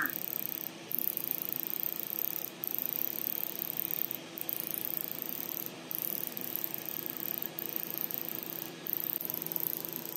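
Halo hybrid fractional laser system running during a treatment pass: a steady hiss and hum with a faint high whine, dipping briefly about every one and a half seconds.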